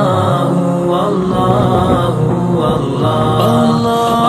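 Background music: a devotional vocal chant of several voices holding long, gliding notes.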